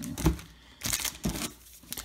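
Sealed trading-card packs' wrappers crinkling as they are handled and counted out by hand, with a sharp tap about a quarter second in.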